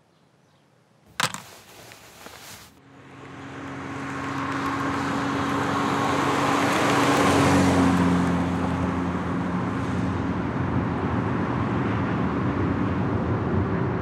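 A thump about a second in, then a moving car's engine and tyre noise swelling up to a peak and running on steadily with a low hum.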